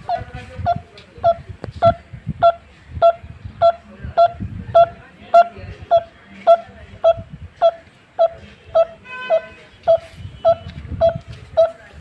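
A man imitating a barbet's call with his mouth: a single short 'tuk' note repeated evenly, a little under two a second, about twenty times, in the manner of a coppersmith barbet. A brief higher, different note cuts in about nine seconds in.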